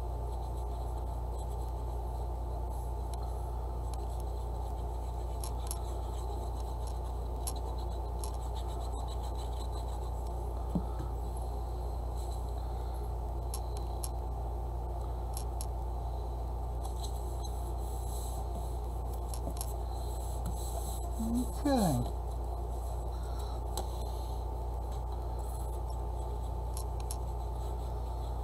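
Steady low background hum under faint scratching and rubbing of paper being handled and glued down, with a small click about 11 seconds in. About two-thirds of the way through there is a brief falling vocal sound.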